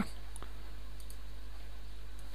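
A single faint computer mouse click about half a second in, over a steady low electrical hum from the recording setup.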